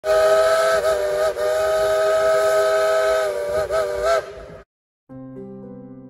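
Steam whistle of a 1938 Baldwin 2-8-2 narrow-gauge steam locomotive blowing one long blast that sounds several notes at once, wavering briefly a few times before cutting off sharply after about four and a half seconds. Soft music comes in near the end.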